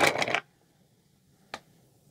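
Brief rustling and clattering of hands handling a coiled cable and tools on a table, which stops suddenly; then near silence broken by one short, sharp click about a second and a half in.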